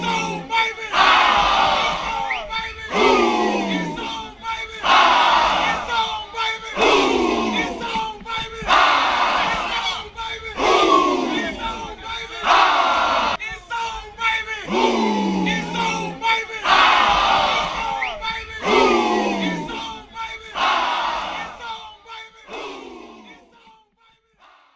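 A group of football players shouting together in unison, a loud yell about every two seconds, each falling in pitch. The shouting fades out near the end.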